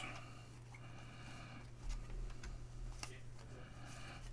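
Baseball trading cards and pack wrapper handled and slid through the fingers: faint rustling with a few soft clicks, over a steady low hum.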